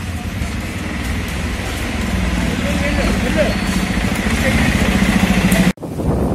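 A vehicle engine running steadily at one even pitch, growing louder, with people's voices around it. The sound breaks off abruptly near the end.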